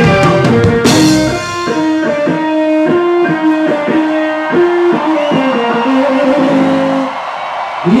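Live band music from the stage. About a second and a half in, the full band with drums drops away, leaving a guitar picking a repeated melodic phrase of separate notes, which fades near the end.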